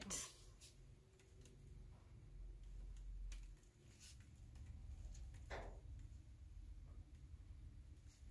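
Near silence: room tone with a faint low hum and a few soft ticks, and one brief soft sound about five and a half seconds in.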